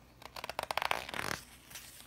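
A picture-book page being turned by hand: a paper rustle of quick crackles lasting about a second.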